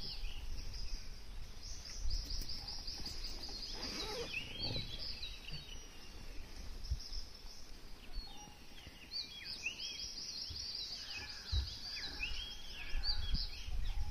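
Several wild birds chirping and calling: short rising and falling whistles, with quick twittering runs about two seconds in and again around ten seconds. A low rumble lies underneath.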